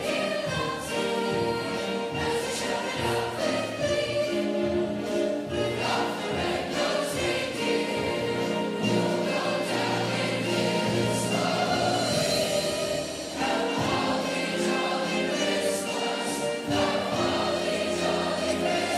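A junior-high choir of young mixed voices singing, holding long notes in several parts at once.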